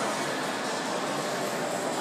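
Steady background noise of a busy indoor shopping mall: an even wash of sound with a faint murmur of distant voices.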